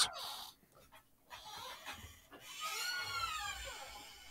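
A dog whimpering once: a short high whine that rises and falls in pitch, about two and a half seconds in, over a quiet room.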